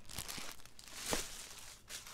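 Plastic packaging crinkling and rustling as it is handled, with a few soft knocks, the loudest about a second in.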